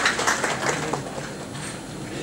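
Audience applause welcoming a speaker to the stage, fading out over the first second or so.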